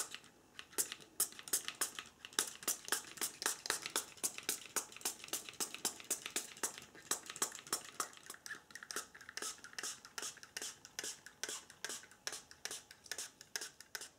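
Small fine-mist spray bottle pumped over and over, a rapid run of short spritzes at about four a second, each a brief hiss.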